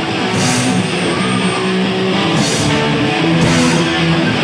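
Live rock band playing loud, with electric guitars and drums.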